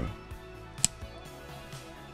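Flush cutters snipping through the tail of a plastic zip tie: one sharp click a little under a second in, over steady background music.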